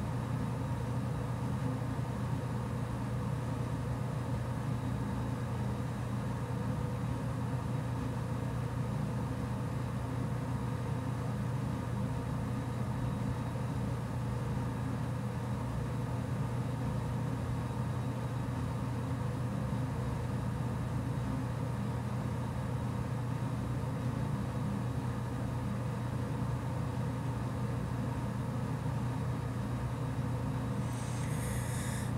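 Steady low electrical or mechanical hum with faint hiss, unchanging throughout.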